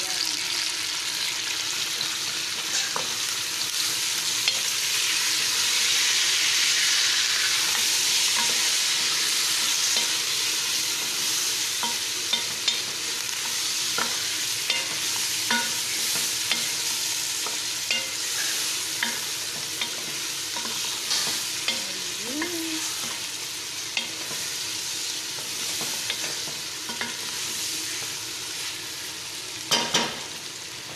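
Chicken pieces with tomato and green chilli sizzling in oil in a pot, while a wooden spatula stirs and now and then knocks against the pot with sharp clicks. The sizzle is loudest in the first third and eases a little toward the end.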